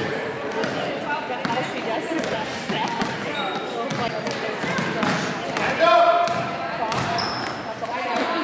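A basketball being dribbled on a hardwood gym floor: repeated short bounces echoing in a large hall, over voices from players and spectators. A voice calls out loudest about six seconds in.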